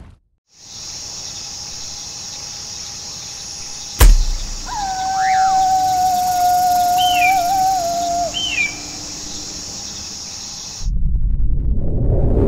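Sound-design sting of night wildlife: a steady high chirring background, a sudden loud hit about four seconds in, then a long wolf howl with two short high falling cries over it. It cuts off abruptly near the end.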